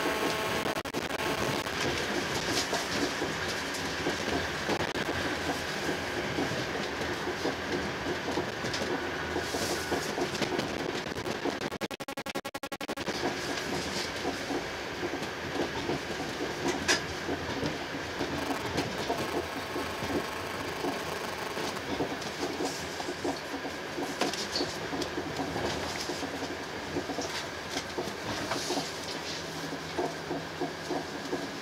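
Running noise of a passenger train heard from inside a coach at speed: a steady rumble of wheels on rail, with scattered clicks from the rail joints. About twelve seconds in, the noise briefly dips and changes character before the rumble returns.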